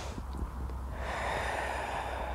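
A person's audible breathing, a soft, airy hiss that grows fuller from about a second in as the breath goes out.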